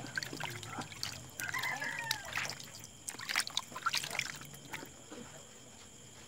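Water splashing and trickling as soap foam is rinsed off a face by hand, in irregular splashes that die down about five seconds in.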